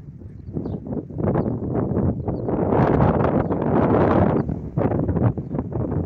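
Strong gusts of wind buffeting the microphone in rough, noisy rushes. The wind builds from about a second in, is loudest in the middle, and eases slightly near the end.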